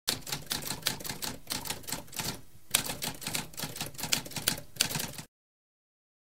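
Typewriter typing: fast, clattering keystrokes, with a short break about halfway and a sharper strike as typing resumes, stopping abruptly a little after five seconds.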